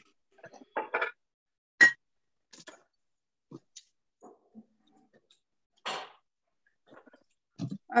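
Scattered clicks and knocks of kitchen items and nuts being handled, with one sharp knock about two seconds in.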